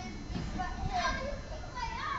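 Distant children's voices, calling and chattering faintly, over a low rumble of wind on the microphone.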